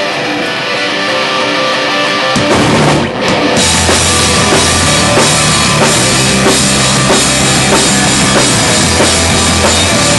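A live band starting a loud song: electric guitar ringing on its own, then the drum kit and full band come in about two seconds in, with a short break, and play on steadily from about three and a half seconds.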